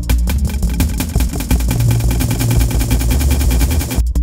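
Roland SPD-SX sampling pad playing an electronic drum-and-bass groove over a looped bassline, the beat broken into a fast, buzzing stutter of repeated hits as the effect control knobs are worked.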